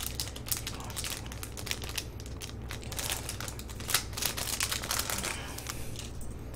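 Plastic packaging crinkling and crackling in quick irregular bursts as a small item is worked out of its wrapper by hand.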